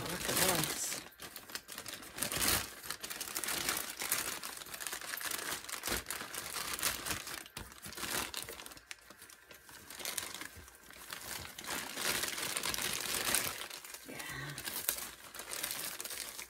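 Thin clear plastic bag crinkling and rustling irregularly as hands pull at it and work it off a ring stretcher/reducer.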